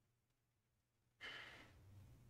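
Near silence, then about a second in a man's short sigh, a breath out that fades away.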